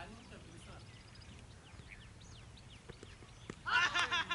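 Open-air quiet with faint scattered chirps, then near the end a sudden loud burst of high, wavering calls, with a few sharp clicks around it.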